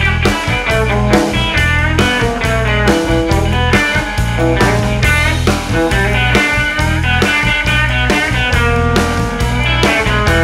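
Instrumental break of a Louisiana dance-hall song: a guitar-led band plays over bass and a steady beat, with no singing.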